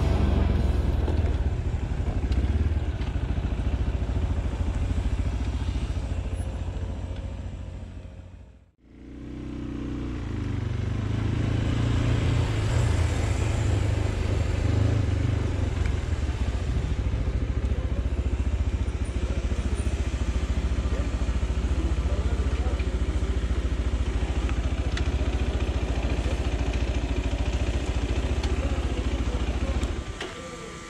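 Small single-cylinder adventure motorcycle riding at low town speed, a steady engine rumble mixed with wind and road noise. The sound fades out and back in briefly about nine seconds in.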